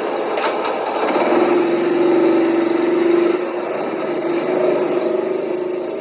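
Small motorcycle engine revving as the bike pulls away. Its note rises about a second in, holds loudest for about two seconds, then eases off and fades.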